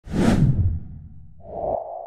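Intro sound effect: a whoosh with a deep rumble under it that fades over the first second, then a steady held tone that starts near the end.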